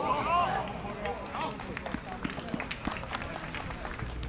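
Footballers shouting on the pitch, loudest in the first half second, with fainter calls and scattered short knocks of boots and ball through the rest.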